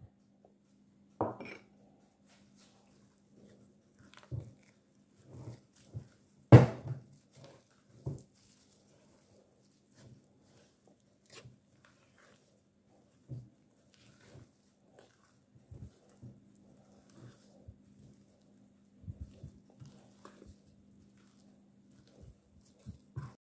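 Silicone spatula stirring and scraping a stiff mashed-potato and flour mixture in a glass bowl, with irregular soft knocks against the bowl, the loudest about six and a half seconds in. A faint steady hum runs underneath.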